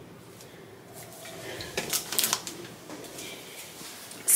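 Faint handling noise: soft rustling with a cluster of light clicks about two seconds in.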